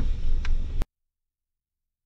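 Low rumble inside the cabin of a Mitsubishi four-wheel drive driving a sandy bush track, with a small tick, ending in a sharp click just under a second in. The sound then cuts off suddenly to dead silence for the rest.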